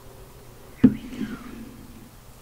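A single sharp knock a little under a second in, the loudest sound, then a short slurping mouth sound as a forkful of instant noodles is taken, picked up close to the microphone.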